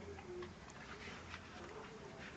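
Faint, scattered light ticks of seeds and a paper seed packet being handled over a planter box of potting soil while seeds are sown.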